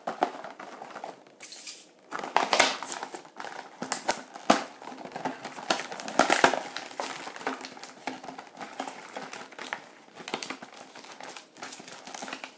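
Clear plastic toy packaging crinkling and crackling as it is handled and pulled open, in irregular bursts that are loudest around the middle.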